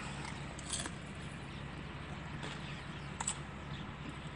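Steady low hum of a car cabin, with a few faint soft clicks of someone chewing a crunchy taco.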